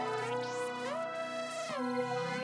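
Synthesizer melody of a trap beat playing back in FL Studio: sustained notes that glide smoothly up and down between pitches, with no drums or 808 underneath.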